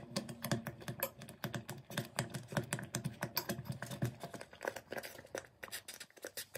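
Metal hand whisk stirring thick milk pudding in a stainless steel pot, its wires knocking and scraping against the pot in quick, uneven clicks.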